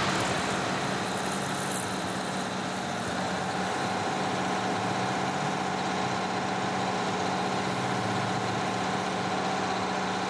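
Steady, unchanging mechanical drone with several held tones, the kind made by a running engine or heavy machinery.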